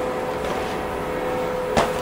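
Steady machine hum with a constant whine running through it, ending with a short click near the end.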